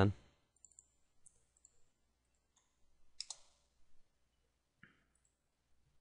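Faint computer mouse clicks: a few short, scattered clicks, the loudest about three seconds in.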